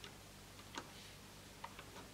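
A few faint, scattered clicks of a metal loom hook and rubber bands against the plastic pegs of a Rainbow Loom, over a low steady hum.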